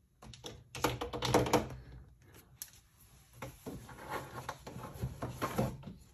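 Rapid light taps and clicks of a clear acrylic stamp block and photopolymer stamp being tapped on an ink pad and pressed onto cardstock, in two bursts with a short pause about two seconds in.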